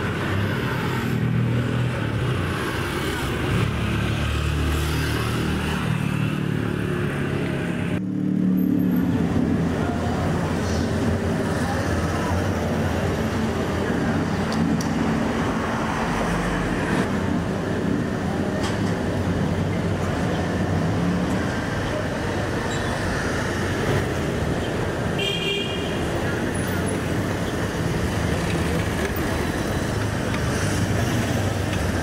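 Busy street traffic: motorbikes and cars running past, engines steady, with a short horn toot about three-quarters of the way through.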